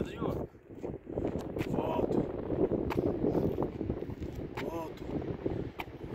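Wind buffeting the microphone, with a few brief vocal sounds such as short words or exhalations.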